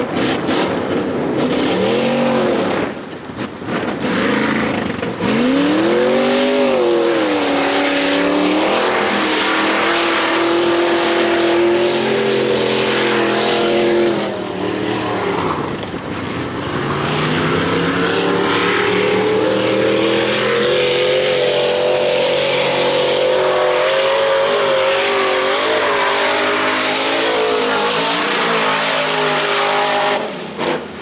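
Race truck engine driven hard around a dirt track, its note climbing and dropping through the gears. It eases off briefly about three seconds in and again around the middle, then holds high for most of the second half.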